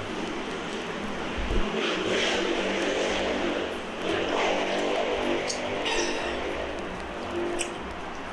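A motor vehicle engine running outside, swelling twice and easing off near the end, with a brief low thump early in.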